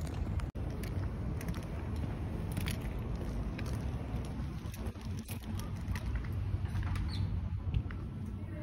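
Footsteps of a person walking on asphalt and then concrete pavement, heard as scattered light clicks over a steady low rumble on the phone's microphone.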